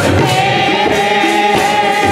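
Sikh kirtan: harmonium chords held under voices singing, with tabla drums played in a steady rhythm.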